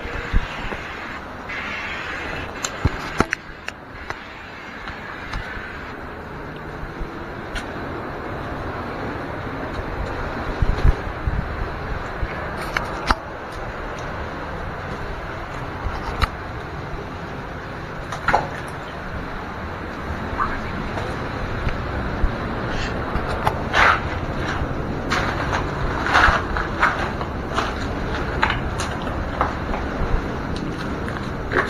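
Steady rush of surf with wind buffeting the microphone, overlaid by many short clicks and knocks of footsteps and cobbles clacking as someone scrambles over rocks, more frequent in the second half.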